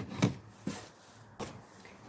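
A few light clicks and knocks of plastic toy food and a toy plastic plate being handled, about four short taps spread over two seconds.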